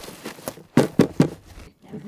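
Plastic trash bag rustling and crinkling as a composting toilet's solids bin, turned upside down inside it, is shaken to empty the compost; three sharp, loud rustles come in quick succession about a second in.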